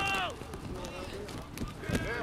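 Voices shouting and calling out across a youth football pitch over open-air field noise: a high call falling in pitch at the start and another near the end.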